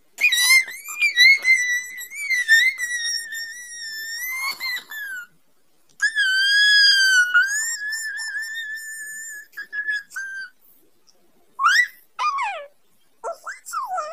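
High-pitched, wavering squeal held in two long notes, the first about five seconds and the second about four, followed near the end by several short squeals sliding down in pitch.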